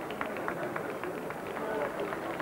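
Scattered handclapping, several quick claps a second, over the murmur of crowd voices after a solo violin piece has ended.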